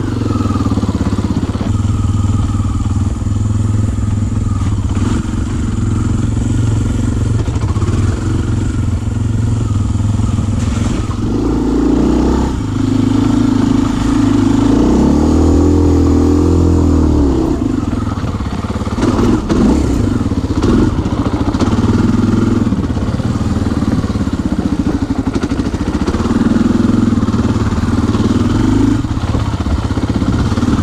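Kawasaki KLX dirt bike's single-cylinder four-stroke engine running while being ridden over a rough dirt trail. The engine pitch rises and falls as the throttle is worked, with a wavering rise and fall about halfway through.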